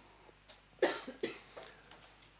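A person coughs twice, about a second in. The second cough is shorter and quieter.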